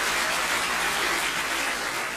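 A steady, dense rushing noise that fades in and out.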